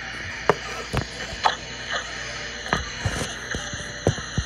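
Faint background music with a beat, heard as short knocks about every half second early on, then less regularly.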